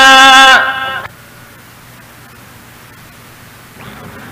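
A man's voice reciting the Quran, holding one long, steady drawn-out note that ends about a second in; after that only the faint, steady hiss of an old recording remains.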